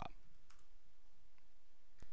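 Two faint clicks of keystrokes on a computer keyboard, over a steady low hum and hiss.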